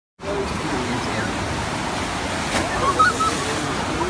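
Steady rush of water pumped over a FlowRider sheet-wave surf machine, with a brief louder surge about three seconds in.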